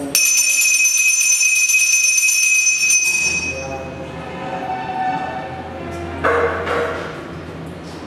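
Puja hand bell rung continuously, the ringing starting suddenly, holding for about three seconds, then fading, as is done during a lamp offering.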